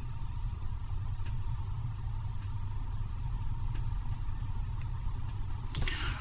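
Steady low hum of background noise, with a faint high steady tone and a few faint ticks spaced over a second apart.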